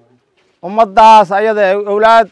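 After a brief silence, a man's voice starts about half a second in, chanting in long, drawn-out notes on a nearly steady pitch.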